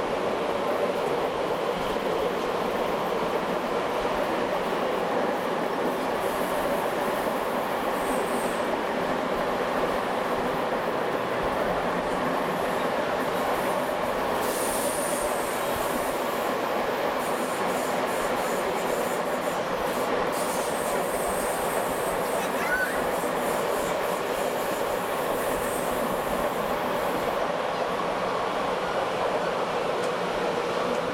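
Steady rumble and rush of a passenger train running along the track, heard from inside a coach at the window. A faint high wheel squeal comes and goes through the middle stretch as the train rounds curves.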